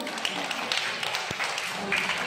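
A group of children clapping their hands as their song ends, with voices mixed in.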